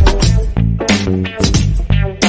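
Instrumental background music with a steady beat and a strong bass line.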